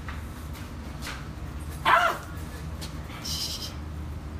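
A dog barks once, short and loud, about halfway through, over a steady low background hum.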